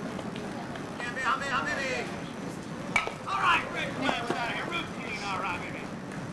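Distant voices of players and spectators shouting and calling out across an outdoor softball field, over a steady background noise, with one sharp crack about three seconds in.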